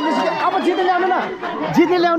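A crowd of people talking over one another, several voices overlapping.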